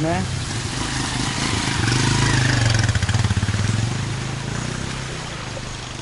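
Motorcycle engine running close by, its note steady at first and then fading as the bike moves away in the second half.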